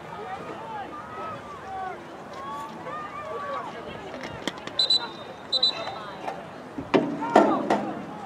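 Distant voices of players and onlookers across an open football field, with two short blasts of a referee's whistle about five seconds in. Near the end a closer voice calls out over a few sharp knocks.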